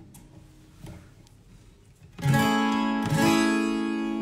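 12-string Guild acoustic guitar strummed about two seconds in, the chord ringing out and slowly fading, with a second strum about a second later.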